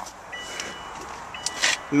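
Car's interior warning chime: two short high beeps about a second apart. Near the end there is a brief rustle of handling.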